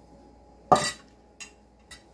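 A metal spoon clinking against a glass mixing bowl: one sharp clink about two-thirds of a second in, then two lighter taps.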